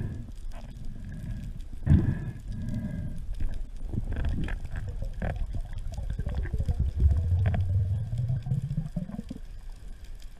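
Muffled underwater sound from a spearfishing dive, heard inside the camera housing. A sharp click comes a little past the middle as the speargun fires into an amberjack, followed by a low hum rising in pitch for about two seconds.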